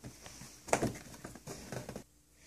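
Faint handling noises: soft rustles and a few light clicks, the loudest a little under a second in.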